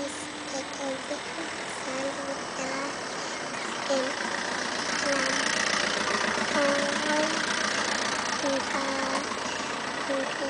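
A young girl's voice singing short wordless syllables, soft and repeated. A rushing noise swells about four seconds in and fades near the end.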